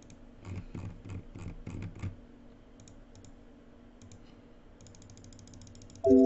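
Quiet typing and clicking on a computer keyboard: a run of key presses in the first two seconds, a few scattered clicks, then a quick run of clicks near the end.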